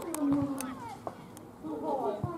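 Young footballers shouting on the pitch: a drawn-out call in the first half-second, with a few sharp knocks of the ball being kicked.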